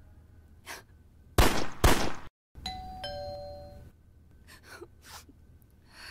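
Two loud, brief noisy bursts, then, after a short silence, a two-note doorbell chime: a higher note falling to a lower one that rings out for about a second.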